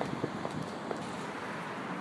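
Steady outdoor town ambience, mostly distant road traffic, with a few faint ticks.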